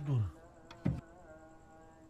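A steady buzzing hum, insect-like, under the film's soundtrack, with a short thud about a second in.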